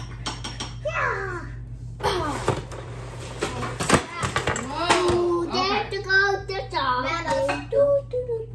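Young children's voices making wordless cries and squeals, high and wavering in pitch, with a sharp knock about four seconds in.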